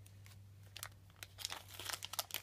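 Foil blind bag crinkling as small fingers work it open, in faint scattered crackles that grow busier in the second half.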